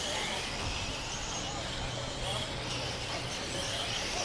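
Mini electric RC cars with 21.5-turn brushless motors running on the track, their faint gliding whines rising and falling over a steady outdoor hiss.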